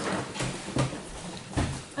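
A plastic soda bottle and rubber balloon being handled as baking soda is shaken from the balloon into the vinegar: a few soft taps and knocks, the heaviest a dull knock near the end.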